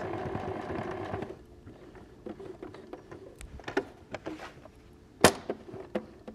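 Electric domestic sewing machine running a zigzag stitch, stopping about a second in. Several small clicks follow as the fabric is handled at the machine, with one sharp click near the end.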